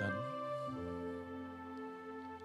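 Soft background music of sustained, held chords, moving to a new chord about two-thirds of a second in.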